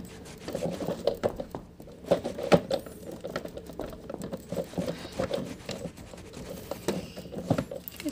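Irregular light tapping, clicking and scratching of a plastic fashion doll being pushed about inside a plastic toy car, with a few sharper knocks, one about two and a half seconds in and two near the end.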